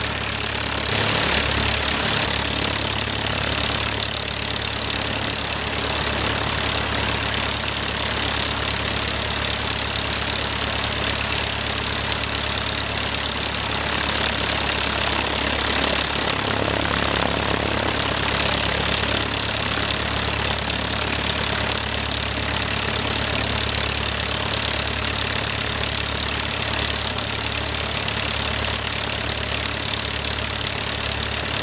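Van's RV-7 light aircraft's piston engine running steadily at low power on the ground, propeller turning, heard close up.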